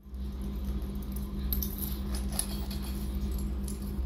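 Metal coins sewn onto the chest panel of a traditional dress, jingling and clinking against each other as the garment is fastened and adjusted on the wearer. A steady low hum runs underneath.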